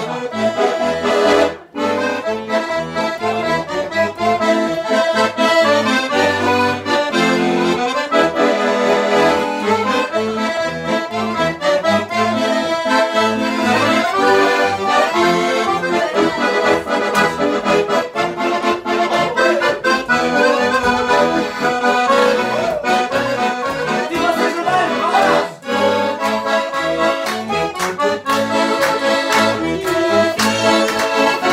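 Two button accordions playing a lively traditional Portuguese dance tune together, the melody running on with only a brief break about two seconds in.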